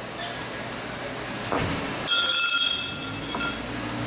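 A knock, then a length of metal round tube clatters down and rings with a high, many-toned metallic ring for just over a second before it dies away.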